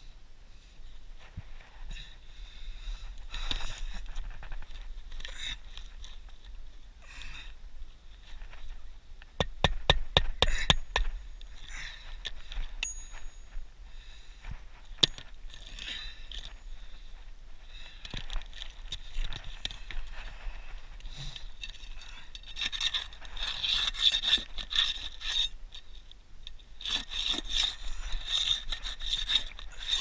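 A flat pry bar scraping and rasping under asphalt shingles in repeated strokes, with a quick run of sharp knocks about ten seconds in and a stretch of dense, continuous scraping in the last third.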